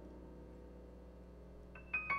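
A piano chord dies away softly, its notes held. Near the end a new high note is struck and rings.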